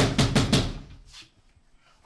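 A hand pounding repeatedly on a front door: a quick run of loud bangs in the first second, dying away after.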